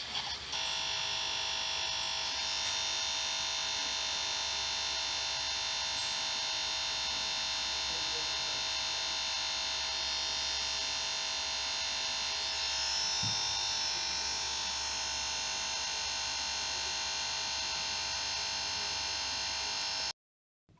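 A Windows PC's speakers stuck on a steady electronic buzz, the sound card looping its last split second of audio after the system crashed to a blue screen (CRITICAL PROCESS DIED). The buzz cuts in about half a second in, replacing the video's audio, and holds unchanged.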